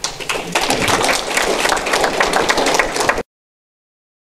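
Audience applauding; the applause cuts off suddenly a little over three seconds in.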